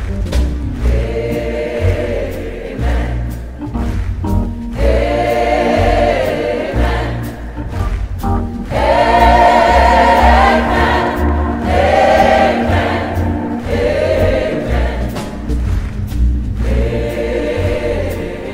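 Large choir singing with instrumental accompaniment: long held notes with vibrato in phrases of a second or two over a steady deep bass, swelling to its loudest near the middle.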